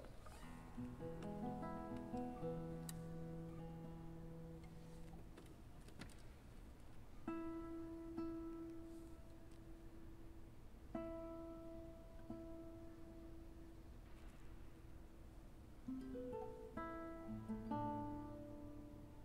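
Nylon-string classical guitar played solo and quietly, opening a slow piece: a cluster of ringing notes over a held bass note, then single notes struck a few seconds apart and left to ring out, and a quicker run of notes near the end.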